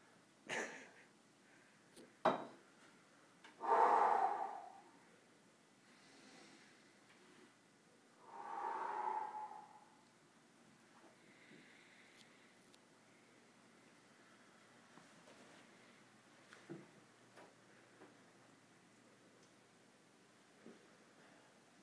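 A couple of sharp clicks or knocks early on, then two heavy breaths close to the microphone, about four and nine seconds in; the rest is quiet room tone with a few faint ticks.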